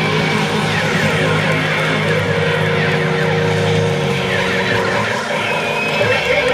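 Live heavy rock band playing loud electric guitars through stage amplifiers, heard from within the crowd. A low held chord drops out about four seconds in, leaving sustained higher guitar tones.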